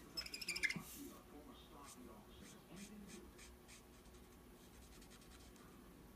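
Felt-tip marker rubbing on cardstock in short colouring strokes, with a brief high squeak in the first second, then fainter strokes that die away.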